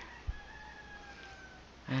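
A distant bird call in the background: one long, faint call falling slightly in pitch, with a short low knock shortly after it starts.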